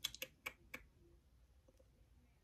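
A quick run of five or six faint, light clicks in the first second.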